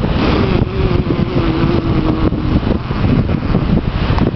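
Wind buffeting a compact digital camera's microphone, a loud, dense rumble over ocean surf. A single held tone sounds over it for about two seconds in the first half.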